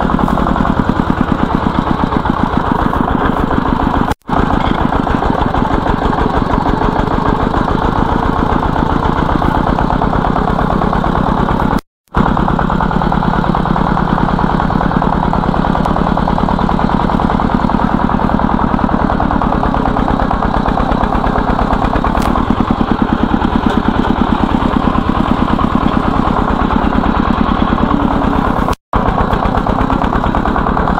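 Single-cylinder diesel engine of a công nông farm cart running steadily with a rapid even chugging, heard from on board as it hauls a load of firewood along a dirt track. The sound drops out for an instant three times.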